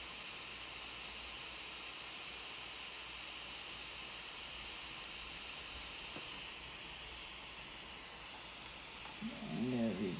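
A small cooling fan runs with a steady whirring hiss and a faint high-pitched whine. A man's voice starts just before the end.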